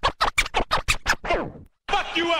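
Hip-hop turntable scratching: a quick run of short back-and-forth record scratches for about a second and a half. It stops dead for a moment, then the music comes back in near the end.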